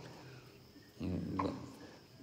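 A pause in speech: the last words fade out, then a short, hesitant, drawn-out 'и' ('and') is voiced about a second in, with quiet room tone around it.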